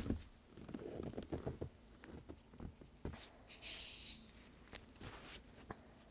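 Gloved hands twisting the cap of a plastic Coca-Cola bottle, with small crinkles and clicks, then a short hiss of gas escaping about three and a half seconds in as the seal breaks. The hiss is the carbonation of a Coke that was shaken up and chilled in freezing air being released.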